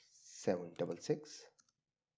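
A man speaking a few words, with clicks of a computer keyboard as a number is typed into a spreadsheet.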